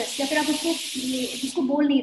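A woman speaking, with a loud hiss of noise laid over her voice that cuts off abruptly about one and a half seconds in.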